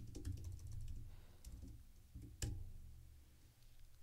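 Typing on a computer keyboard: a quick run of keystrokes in the first second, then scattered taps, with one sharper click about two and a half seconds in. Faint.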